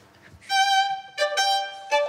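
Solo violin played with the bow, a few quick notes in a row starting about half a second in, each note changing pitch.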